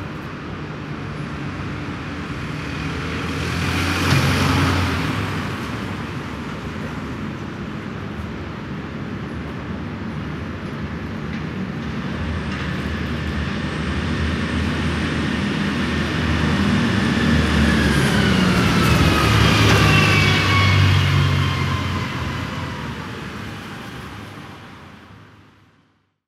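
Playback of a surround recording of road traffic: a vehicle swells past about four seconds in, and a louder pass near the end carries a whine that falls in pitch. The recording starts to fade out just before the end.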